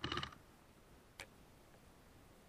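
Airsoft rifle firing a short rapid burst of BBs, a fast rattle lasting about a third of a second, followed a second later by a single sharp click.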